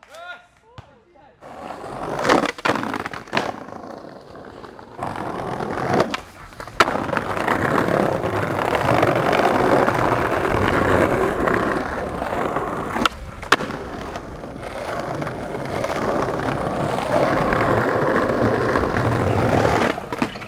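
Skateboard wheels rolling over brick pavers and pavement, a steady gritty rumble, broken by sharp clacks of the board popping and landing: a few about two to three seconds in, two around six to seven seconds, and two more around thirteen seconds.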